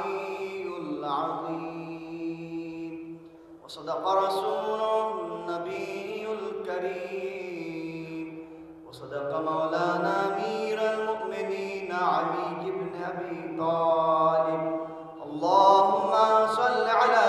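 A solo male qari chanting a melodic religious recitation through a microphone in long held phrases, with short breath pauses between them.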